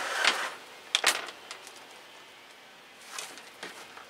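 Hands firming loose, chunky orchid potting mix around a small plant in a thin clear plastic pot: a brief rustle, a couple of sharp clicks about a second in, then faint crackling and rustling.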